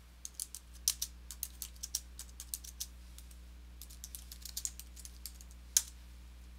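Typing on a computer keyboard: a run of keystrokes, a short pause, then a second run, with one louder keystroke near the end.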